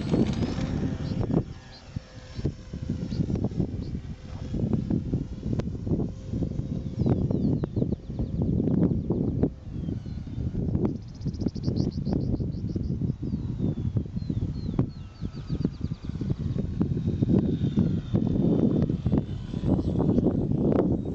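High whine of the Parkzone Stinson's electric motor and propeller, rising in pitch at the start as it throttles up for takeoff, then holding steady for a few seconds and fading as the plane flies away. Over it all runs a loud, gusty low rumble of wind buffeting the microphone.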